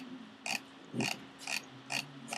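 Faint short clicks about half a second apart, about four in all, as a computer is worked to scroll a document, over a faint low hum.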